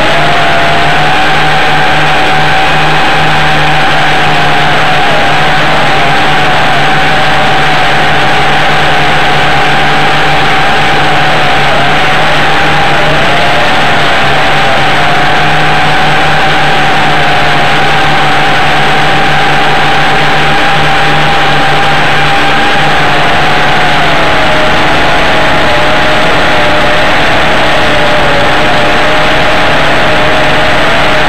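WLtoys V262 quadcopter's motors and propellers whining with a rushing noise, loud and close as if picked up by a camera mounted on the craft. The pitch wavers slightly up and down with the throttle and sinks a little near the end.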